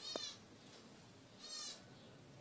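Zebra finch giving two short nasal calls about a second and a half apart, with a brief click at the first call.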